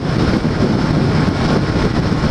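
Steady wind noise on the microphone over the V-twin engine of a 2013 Honda Shadow 750 motorcycle cruising at highway speed.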